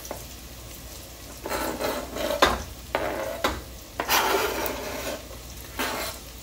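Diced onion scraped off a flexible plastic cutting mat with a knife into a pot of melted butter, in several rough scrapes with a few sharp taps of the knife against the mat and pot rim. Under it, the butter sizzles steadily.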